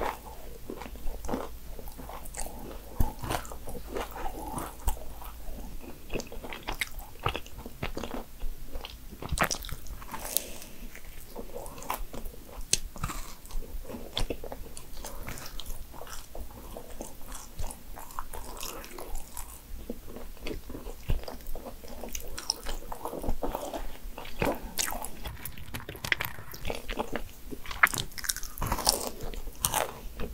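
Close-miked chewing and mouth sounds of a person eating a dense, chewy Nutella financier, with frequent small sharp clicks throughout.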